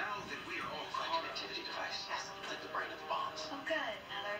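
A television drama's soundtrack playing in the room: faint dialogue over background music.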